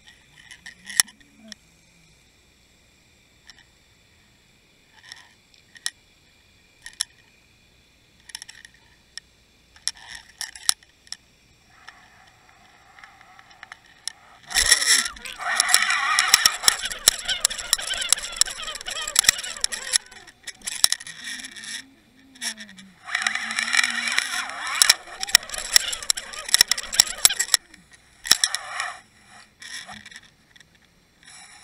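Scattered clicks and taps at first, then from about halfway in two long stretches of loud rushing, scraping noise with a short lull between them, as a hooked fluke is reeled up through the water.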